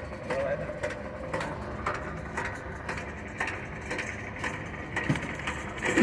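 Electric diamond core drill running steadily as its core barrel cuts into a concrete pier, a low hum with scattered short clicks and knocks.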